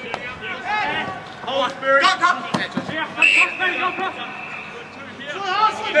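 Men's voices calling out, with a few sharp thuds, two of them close together about two seconds in. A steady high tone holds for about two seconds from the middle.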